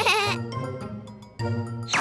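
A cartoon baby's giggle, wavering in pitch, in the first half-second, over steady children's background music.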